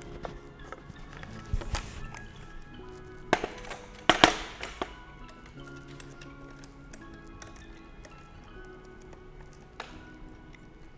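Background music, with a few handling clicks and knocks as a Broncolor Siros L monolight is fitted onto a light stand; the loudest knock comes about four seconds in.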